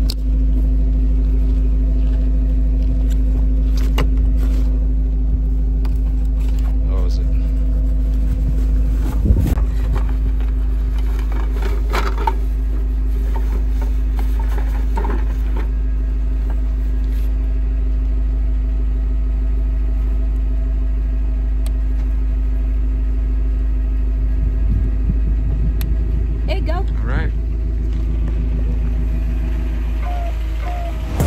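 Pickup truck engine idling steadily throughout, a constant low hum. Brief indistinct voices and handling noises now and then.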